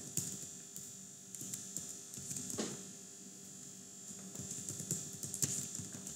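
Computer keyboard typing: scattered runs of light key clicks, with one louder key stroke about two and a half seconds in, over a steady high hiss.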